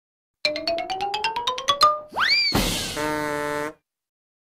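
Short electronic intro jingle: a quick run of about a dozen short notes climbing in pitch, a sweeping upward swoop, then a crash and a held chord that cuts off suddenly.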